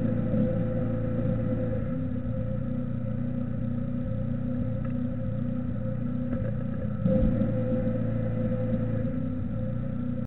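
Steady low electrical hum with several held tones, picked up by the nest-box camera's microphone, getting a little louder about seven seconds in. A few faint taps or scratches from the chickadee moving on the wooden wall of the nest box.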